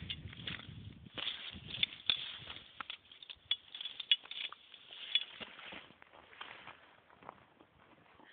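Irregular crunching and crackling of snow and ice being worked by hand, with scattered sharp clicks, busiest over the first six seconds and thinning near the end.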